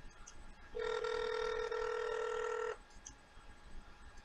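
Telephone ringback tone heard through the handset while the outgoing call waits to be answered: one steady ring about two seconds long, starting a little under a second in.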